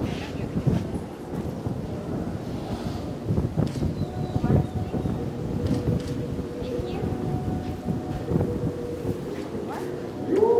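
Wind buffeting the camera microphone in an uneven low rumble, with faint murmured voices and a few light knocks underneath.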